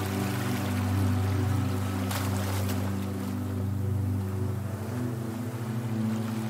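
Ambient meditation music with sustained low drone tones. A rushing whoosh of noise, like wind or surf, swells over it and peaks about two to three seconds in, then fades.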